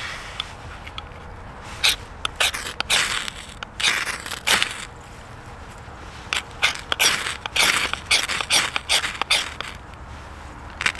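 Ferrocerium rod struck with the spine of a knife, throwing sparks onto tinder of dry leaves and wood shavings: two runs of quick scraping strikes, each a few seconds long, with a short pause between them.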